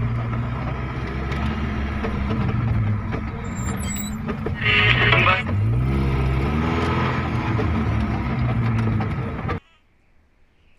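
Pickup truck engine running at low revs, rising and falling in pitch as it is revved about six to seven seconds in. A brief loud hissing burst comes about five seconds in, and the engine sound cuts off abruptly near the end.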